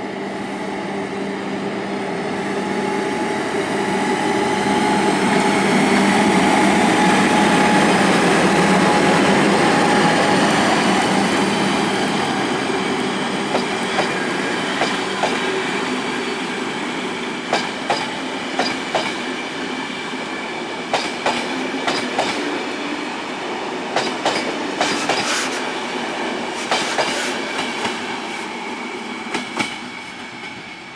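BDZ class 46 electric locomotive pulling away with a passenger train: a steady electric hum with slowly rising whines, loudest as it passes. Then the coaches' wheels click over the rail joints, often in pairs, fading as the train recedes.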